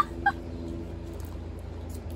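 Two short, high-pitched squeals from a young woman at the very start, a fraction of a second apart, then only a low steady rumble.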